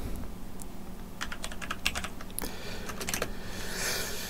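Typing on a computer keyboard: irregular light key clicks, some in quick short runs.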